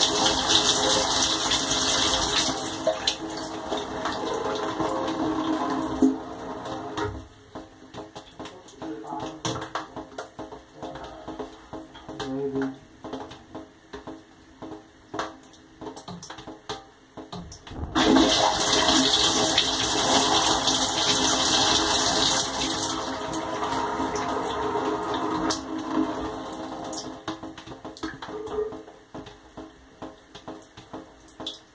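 Water spraying inside a running dishwasher. The spray dies down about six seconds in, leaving scattered drips and clicks. It starts again suddenly about eighteen seconds in and dies down again some eight seconds later.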